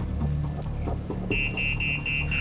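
An electronic warning alarm, a high rapid beeping, starts about two-thirds of the way in, signalling that the patient has been bumped and the scan results are spoiled. Before it, a low steady background tone.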